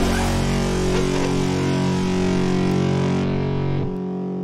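The final sustained chord of a heavy rock song on distorted electric guitar, held and ringing out, its treble fading away about three seconds in.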